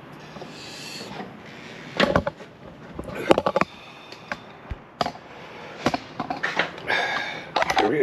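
Several sharp knocks and clicks at irregular intervals, starting about two seconds in.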